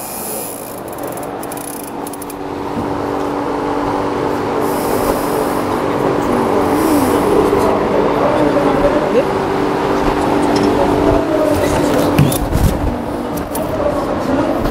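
Electric drive motors of a dinghy sailing-simulator platform running with a steady mechanical hum, getting louder over the first few seconds as the mounted boat is tilted through a jibe.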